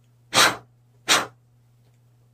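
Two short, forceful bursts of a person's breath, about three-quarters of a second apart, over a faint steady low hum.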